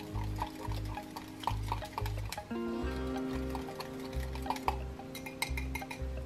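Background music with a steady bass beat, over a mini whisk stirring and clicking against a glass measuring cup as powdered gravy mix is whisked into water.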